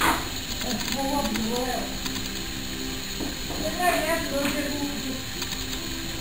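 Faint, indistinct voices over a steady background hiss, in two short stretches about one and four seconds in.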